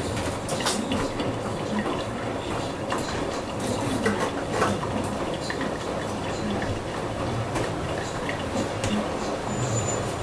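Hotpoint Ultima WT960G front-loading washing machine on its wash: the drum turns with water sloshing and laundry tumbling, with irregular light knocks throughout.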